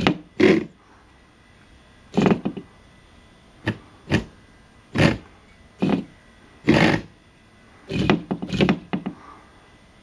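Small DC motors on the legs of motorized wooden toys buzz in a series of short, irregularly spaced bursts, shaking the toys so they shuffle along.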